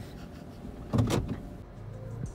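Car cabin sound of a vehicle waiting in line, a low steady rumble, with a short sharp noise about a second in.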